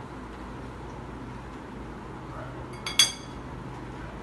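Kitchenware clinking while a salad is seasoned: two light ticks, then one sharp ringing clink about three seconds in, over a low steady hum.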